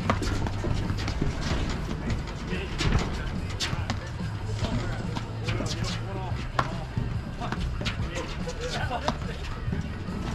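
Ball struck back and forth with paddles in a doubles rally: irregular sharp pops, often a second or more apart, with faint voices and a steady low hum underneath.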